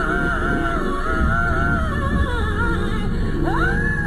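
Live gospel singing: a woman's high voice holding long, wavering melismatic lines over a full band with organ.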